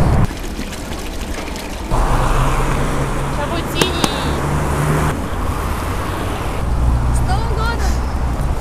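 Night city street: a steady bed of traffic noise with a low hum, and a few faint, brief voices of passers-by.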